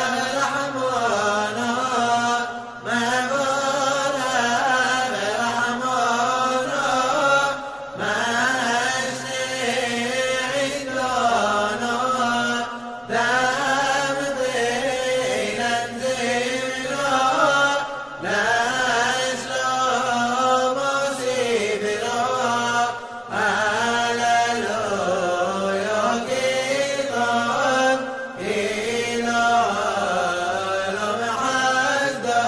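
A voice chanting a Hebrew piyyut (liturgical poem) for Simchat Torah in the Yemenite style. It sings in phrases of about five seconds, the pitch winding up and down, with a short breath between phrases.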